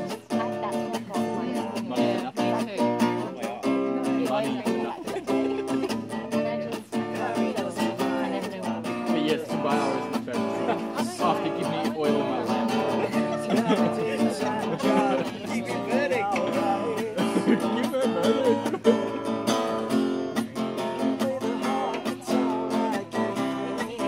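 Cutaway acoustic guitar being played, a continuous run of ringing chords and notes.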